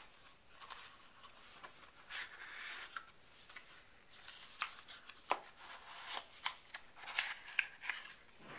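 Paperboard packaging of an iPhone dock being handled: a box sleeve slid off and the inner cardboard box opened, with rubbing and rustling and a scatter of small sharp clicks and taps.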